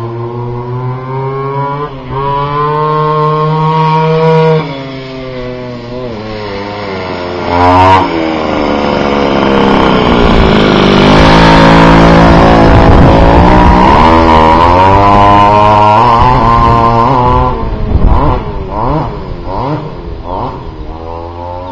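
Goped Xped scooter's G23LH two-stroke engine revving up and down as it is ridden. It grows loudest through the middle, then gives several quick throttle blips near the end.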